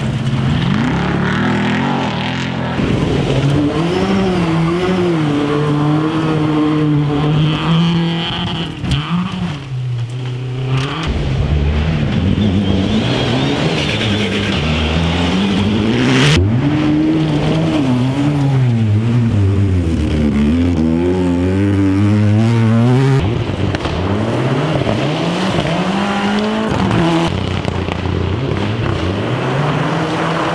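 Rally cars driven hard on gravel stages, one after another. Their engines rev up and drop repeatedly through gear changes and corners as they pass, with tyre and gravel noise. The sound cuts abruptly from one car to the next several times.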